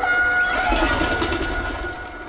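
Cartoon soundtrack: a held high note fades away, and a short dove-like cooing call comes about halfway through.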